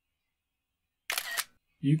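macOS screenshot sound effect: a camera-shutter click, played once about a second in, as a selected screen region is captured.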